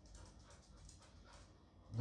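Golden retriever panting faintly as it walks up, a few soft breaths.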